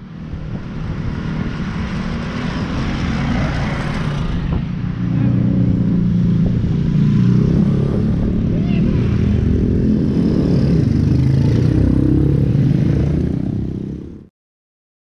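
Small-capacity motorcycle engine running steadily, getting louder about five seconds in and holding there.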